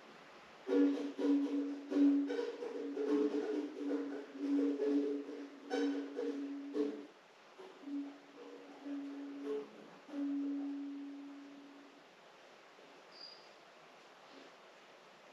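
A plucked string instrument picked quietly in a loose, uneven rhythm: mostly one note repeated, with a second, higher note in between. The last note rings out and fades away near the end.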